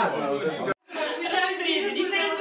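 Several people chatting at once, with a brief break in the sound about three-quarters of a second in.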